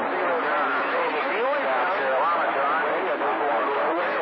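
A voice received over a CB radio on channel 28 as long-distance skip, talking under a steady hiss of static, with the words hard to make out.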